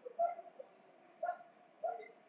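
A dog giving three short barks.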